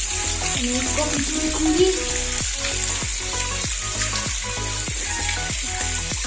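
Natural spring water pouring from stone spouts into a stone tank, a steady splashing hiss, under background music with a steady beat.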